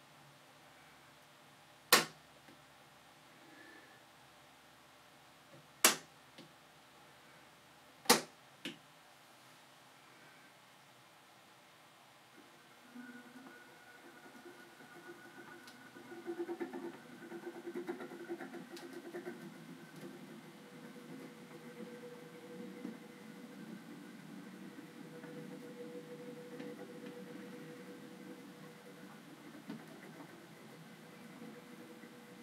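Three sharp clicks, about two, six and eight seconds in. From about twelve seconds in, the faint sound of a Bachmann OO gauge Class 37 model with a TTS sound decoder running: its diesel engine sound comes through the small speaker, with motor and wheel noise, and grows somewhat louder as the locomotive moves off along the track.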